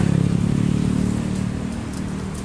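A motor vehicle's engine running close by, a steady low drone that eases off slightly toward the end.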